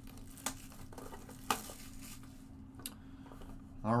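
Faint handling of a small cardboard trading-card box, with light rustling and a few sharp clicks and taps.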